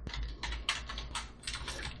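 Computer keyboard typing: a quick, uneven run of keystrokes, about ten in two seconds, as a line of code is entered.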